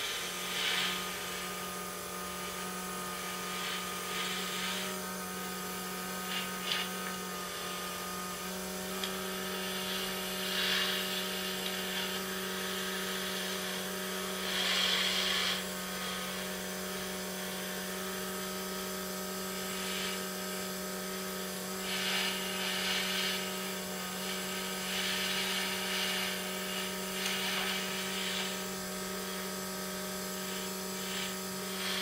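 Small airbrush compressor running with a steady hum, while the airbrush sprays food colouring in short hissing bursts every few seconds.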